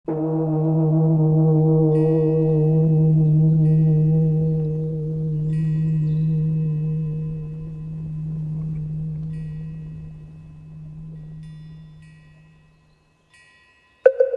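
A single low bell stroke ringing out and slowly fading over about thirteen seconds, its hum swelling and sinking as it dies away. Short bright chimes sound above it about half a dozen times.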